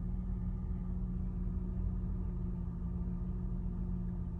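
Steady low hum of a car idling, heard inside the cabin, with one constant low tone over a rumble.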